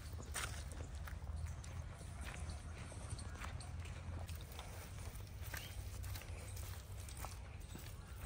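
Barefoot footsteps of several people walking on wet mud, a run of irregular soft steps over a steady low rumble.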